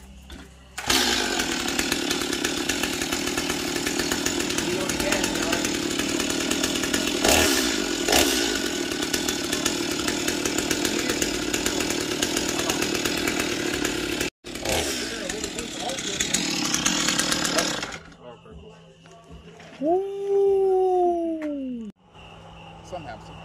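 A chainsaw starts about a second in and runs steadily at a loud, even pitch for about seventeen seconds, with a brief drop-out partway, then stops. Near the end there is a short sound that falls in pitch.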